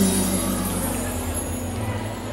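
The last notes of a live amplified band dying away: electric bağlama and backing ringing out over a steady low hum, growing gradually quieter.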